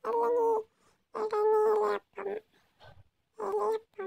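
A young child's high-pitched voice in drawn-out vocal sounds, about four in a row, each under a second, held at a fairly steady pitch.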